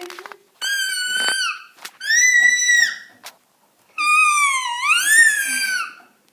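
A toddler's high-pitched squeals: three drawn-out cries, the last one dipping in pitch and then rising.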